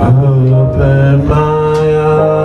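A man singing a slow gospel song into a microphone, holding long notes, over instrumental backing music.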